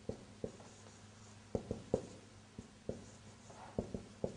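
Dry-erase marker writing on a whiteboard: a faint string of short, irregular squeaks and taps as the strokes are drawn.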